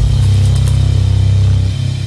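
Television programme ident music sting: a loud, sustained low bass chord with a bright upper layer, held over the logo and easing slightly near the end.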